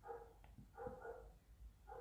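A dog barking faintly: two or three short barks about a second apart.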